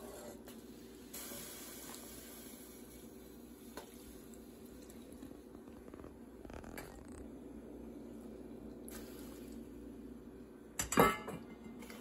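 A steady low hum in the background, with a few faint light knocks as stainless steel bowls are handled over a steel pot. About eleven seconds in, a loud, ringing metallic clank of a steel bowl knocking against the pot.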